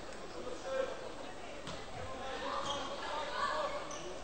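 A volleyball bounced on the court floor before a serve: a couple of faint thuds over low crowd murmur in a large hall.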